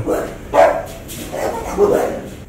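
A dog barking twice, about half a second in and again near the end.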